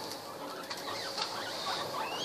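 Guinea pigs eating greens: faint crunching of chewing with a few short, soft guinea pig calls.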